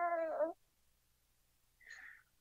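An infant makes one drawn-out vocal sound on a steady, high pitch that stops about half a second in. A faint, brief sound follows near the end.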